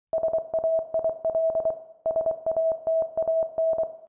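A single steady electronic beep tone keyed rapidly on and off in a pattern of short and longer beeps, in two runs of about two seconds each.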